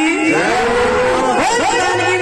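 A man's voice singing a long drawn-out note through a PA loudspeaker. The note glides up and holds, then falls as a new phrase starts near the end. Held keyboard chords sound underneath.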